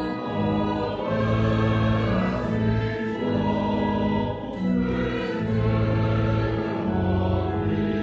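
Choir singing a slow hymn in long, held notes.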